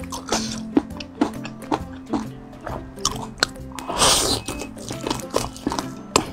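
Background music under close-miked chewing and biting of a sauce-coated fried chicken wing, with short sharp bite clicks and one longer, louder mouth noise about four seconds in.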